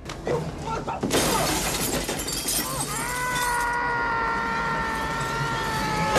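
Film fight sound effects: a couple of hits, then a loud crash of shattering glass about a second in. A long, high yell follows, held steady for about three seconds before breaking off near the end.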